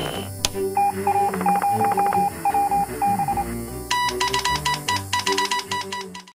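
Morse-code-style beeping from an old radio set: steady pitched tones keyed in irregular short and long pulses, with a second, higher and brighter series of beeps starting about four seconds in, over a soft music bed. A single sharp click comes shortly after the start.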